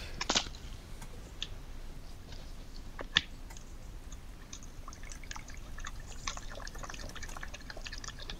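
European badger crunching and chewing nuts, heard as faint crisp clicks and crackles that grow thicker in the second half, with one sharper click about three seconds in.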